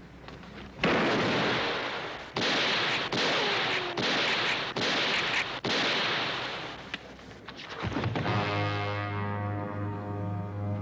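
A run of about six gunshots, roughly a second apart, each one ringing and echoing away. Near the end, orchestral music with brass comes in.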